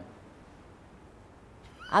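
A short pause in a woman's speech, with only quiet room tone. Her voice trails off at the start and starts again near the end.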